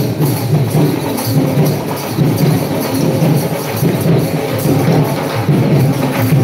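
Devotional procession music with a steady rhythm of jingling hand percussion.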